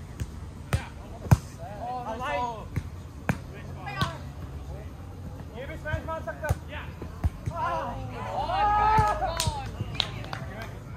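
A volleyball being struck back and forth in a rally: a string of sharp slaps of hands and forearms on the ball, the loudest about a second in. Players shout calls between the hits.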